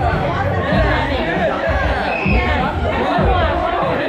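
Several people chatting and laughing at once around a table, over background music with a steady bass beat.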